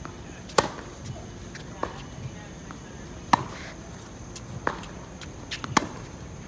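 Tennis groundstroke rally on an outdoor hard court: sharp racket strikes on the ball about every one to one and a half seconds. The three loudest hits come from the near end, the quieter ones from the far end, with lighter ball bounces between them.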